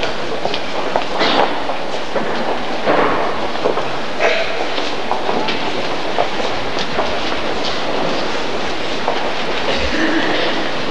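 Steady rumbling church ambience from a congregation moving in a queue: shuffling footsteps, rustling and small knocks scattered throughout, picked up by an old camcorder's microphone with its hiss.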